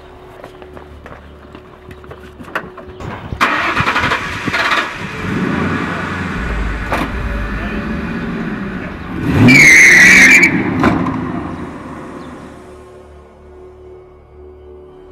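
Ford Mustang GT convertible's V8 starting and running, then revving hard as it pulls away, loudest about ten seconds in with a high squeal, then fading as it drives off.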